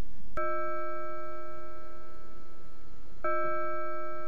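Two strikes of a bell-like chime at the same pitch, about three seconds apart, each note ringing on steadily until the next.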